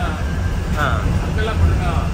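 Steady low engine and road rumble inside the cab of a moving SETC AC sleeper bus, with indistinct talking over it.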